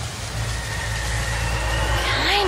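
Steady rushing, wind-like noise with a low hum beneath, a sound-effect transition; a thin high steady tone joins about half a second in.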